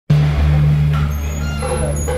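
A motor vehicle's engine runs with a steady low hum. Faint music begins to come through near the end.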